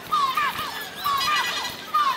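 A bird-like chirp, a short tone ending in quick hooked glides, repeating about once a second. A thin steady whistle-like tone sounds between two of the chirps, about a second in.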